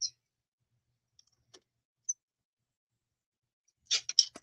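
Near silence broken by a few faint, brief clicks about one and two seconds in, from hands tying a crinkled seam-binding ribbon into a bow.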